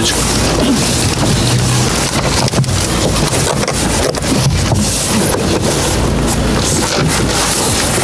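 Steady loud rushing noise on the microphone, with scattered knocks and faint voices underneath.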